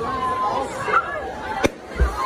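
Voices of onlookers chattering and calling, then one sharp smack about one and a half seconds in as a jumper from a high diving tower hits the water.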